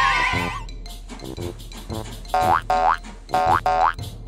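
A cartoon boing jump sound effect with a wobbly rising pitch that ends about half a second in, over cheerful children's background music with a steady beat and short bright notes.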